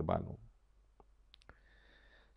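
A man's speech trails off, then a pause with three short faint clicks a little after a second in, followed by a faint steady high hum.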